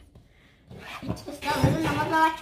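A young child's high voice vocalizing without clear words, starting about halfway through after a near-quiet moment, with a few soft thumps.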